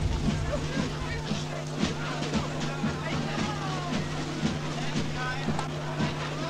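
Music with a steady beat of about two a second over a steady low hum, with voices mixed in.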